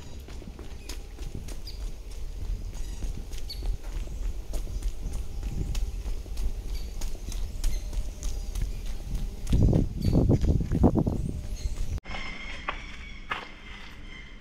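Hard-soled footsteps on cobblestones, a steady run of sharp clicks, over a low rumble of wind on the microphone that swells louder about ten seconds in.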